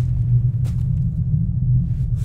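A steady, deep low rumble throughout, with one short soft scuff about two-thirds of a second in.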